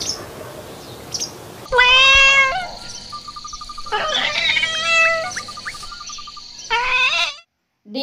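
Kitten meowing three times: one long meow about two seconds in, another around the middle and a short one near the end, with a faint rapid ticking between the calls.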